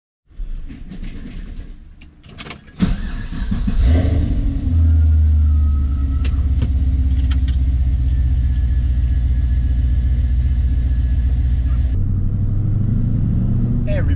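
Pontiac GTO's V8 engine started about three seconds in after a few clicks, flaring up briefly before settling into a steady idle. The engine note changes near the end.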